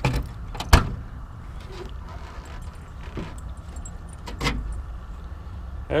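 Car keys jangling in the trunk lock of a 1969 Dodge Dart, with a sharp click a little under a second in as the lock turns and the latch lets go, then a further knock about four and a half seconds in as the trunk lid is raised.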